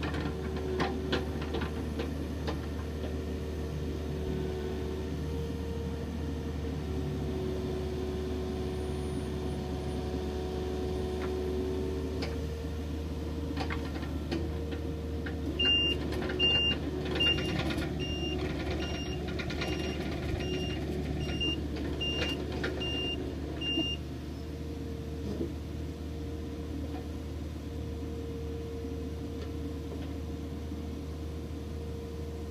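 Komatsu PC50MR-2 mini excavator's diesel engine running steadily under hydraulic work, with a whining tone that shifts as the arm moves and a few short knocks. About halfway through, its travel alarm beeps repeatedly, a little faster than once a second, for about eight seconds while the machine tracks, then stops.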